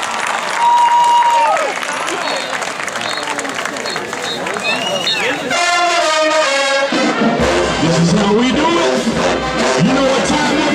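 Marching band's brass playing over a cheering crowd: a held high note falls away about a second and a half in, a full brass chord sounds about halfway through, and a low bass part comes in about seven seconds in.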